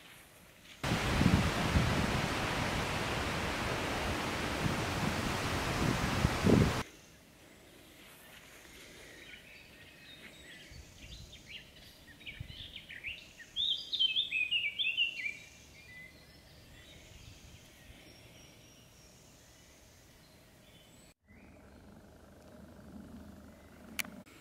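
A loud rushing noise lasts about six seconds and starts and stops abruptly. Then a songbird sings a run of chirping phrases, loudest about halfway through, over a quiet outdoor background.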